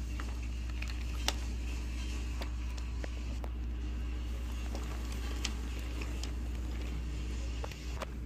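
Wooden toy train coaches rolling along wooden track: a steady low rumble with scattered light clicks.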